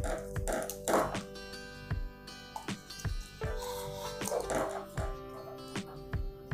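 Background music with held notes, over light clicks and rustles of plastic plug parts and cable being handled.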